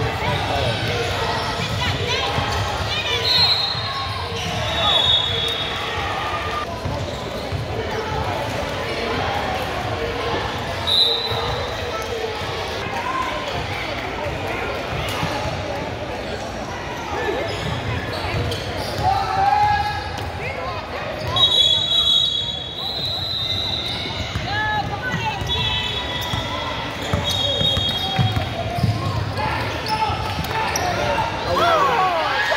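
Youth basketball game in play: a basketball dribbling on a hardwood gym floor, with short high squeaks of sneakers at several moments and spectators' voices underneath.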